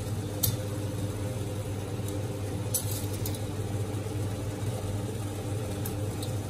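Pot of water boiling on a gas stove under a steady low hum, with a few light clicks of the metal spoon against the pot as spaghetti is pushed down into it.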